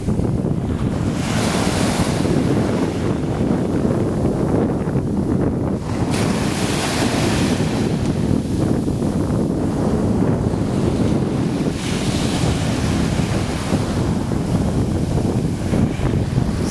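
Wind buffeting the microphone over small waves washing onto a sandy beach, with a hiss of surf swelling up every five or six seconds.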